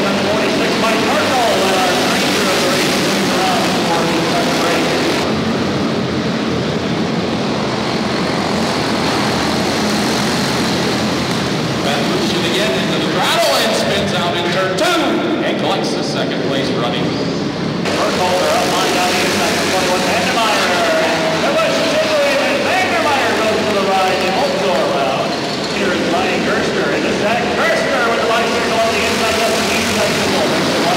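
Several small single-cylinder racing engines of quarter midgets and karts running at high revs, their pitches rising and falling and overlapping as the cars race around the track.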